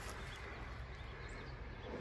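Faint outdoor background: a low steady rumble with a few faint, high, distant bird chirps.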